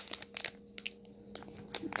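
Small clear plastic zip-top bags of wax melts crinkling as they are handled and one is picked up, a few light scattered crackles. A faint steady hum lies underneath.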